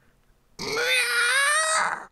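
A high voice holds one long, drawn-out wordless sound at a fairly steady pitch for about a second and a half, starting about half a second in.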